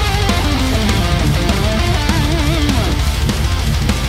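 Playback of a heavy metal track: distorted rhythm guitars, bass and drums under a lead guitar solo whose notes bend and waver with vibrato about halfway through. The mix has no automation, so the rhythm guitars stay at full level under the solo.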